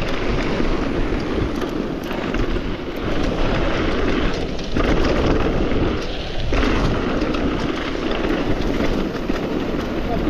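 Wind rushing over the bike-mounted camera's microphone as a mountain bike descends a dirt trail at speed, with the tyres rolling over the loose surface and small rattles from the bike.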